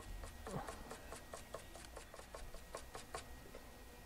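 A small stiff-bristled brush scrubbing a phone circuit board, faint quick scratchy strokes about six a second that stop near the end. It is cleaning leftover solder off the power-button pads so the new button will sit flush.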